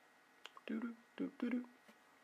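A man's voice saying a few short, quiet syllables between about half a second and two seconds in, over faint room tone.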